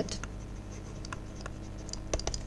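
Stylus writing on a tablet as a word is handwritten: faint, scattered light ticks and scratches of the pen tip, over a steady low hum.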